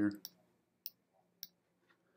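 Four short, sharp clicks of a computer mouse button, a little over half a second apart, each one a brush stroke being dabbed on with an image editor's Burn tool. The end of a spoken word is heard at the very start.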